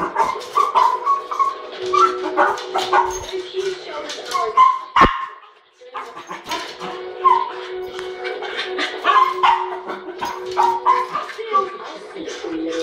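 Small terrier barking and whining excitedly in quick bursts of yelps, over a TV soundtrack with a steady background tone. There is one sharp knock about five seconds in.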